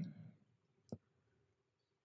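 Near silence in a pause of a man's speech, with the last word trailing off at the start and a single faint click about a second in.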